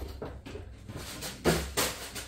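Two sharp clattering knocks about a second and a half in, a fraction of a second apart, over quieter handling noise: a plastic flour container being fetched out of a kitchen cupboard.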